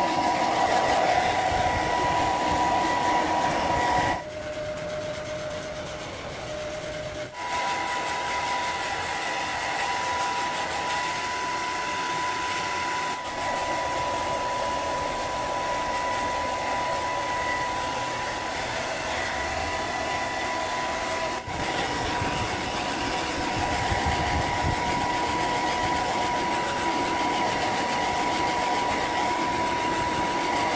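Handheld hair dryer blowing steadily on a dog's wet fur, a steady whine over the rush of air. About four seconds in it drops lower and quieter for about three seconds, then returns to full strength.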